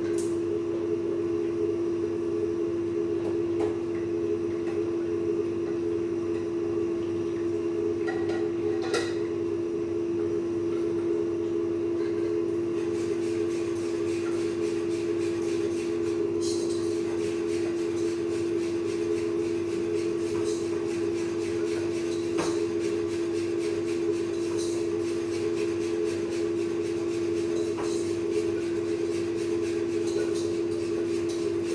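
A steady mechanical hum at one low pitch, unchanging throughout, with a few faint clicks and clinks now and then.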